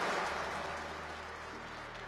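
Audience applause dying away, fading steadily to a low murmur.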